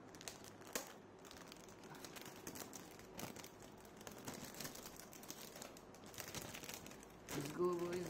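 Clear plastic protective bag crinkling softly as a laptop is slid out of it, with one sharper crackle about a second in.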